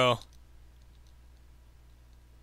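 Faint clicks of a computer mouse, likely its scroll wheel, over a low steady hum of a quiet room, just after a man's spoken word ends at the start.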